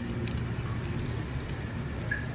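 A fork stirring and mashing guacamole in a stainless steel bowl: wet squelching with faint ticks of the fork against the metal.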